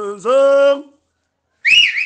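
A man's voice sings a held, rising note that cuts off just under a second in. After a short dead gap, a high whistle wavers up and down near the end.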